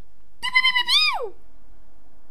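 A single high-pitched vocal cry from a person's voice, held briefly, then rising and sliding steeply down, in under a second.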